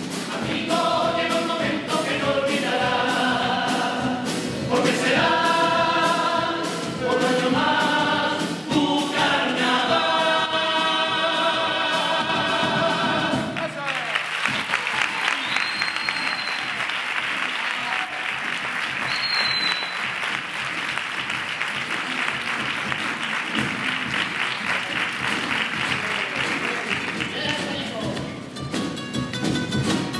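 Comparsa chorus singing the closing phrases of a carnival song in harmony, over guitars and a steady drum beat; the song ends about halfway through. Audience applause then fills the rest.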